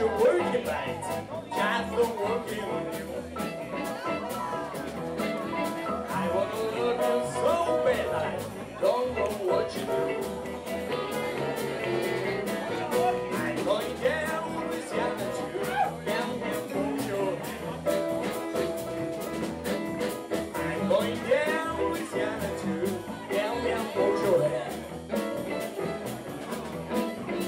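Live blues band playing: a harmonica played into a vocal microphone over electric guitar, electric bass, drum kit and electric piano, its notes bending and wavering.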